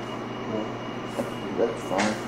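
Steady background hiss and low hum of room noise, with brief faint voices in the pause between speakers.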